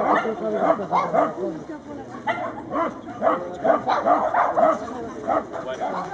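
A dog barking repeatedly in a rapid series of short barks, several a second, through an agility run.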